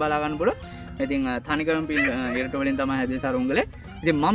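A man speaking, with pauses, over faint background music.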